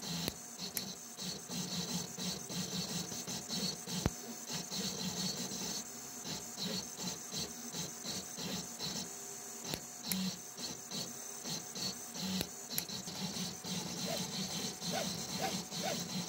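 3D printer stepper motors whirring in quick short bursts as the tilted 5-axis printhead lays down a small part, over the steady whir of the printhead's cooling fans.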